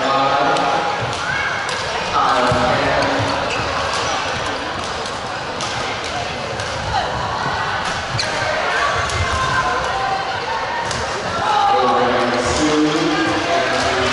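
Badminton play in a large, echoing sports hall: a handful of sharp racket-on-shuttlecock hits at irregular intervals, over steady background chatter. Voices rise near the start and again near the end.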